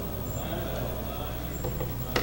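Room tone: a steady low hum with faint, indistinct background sound.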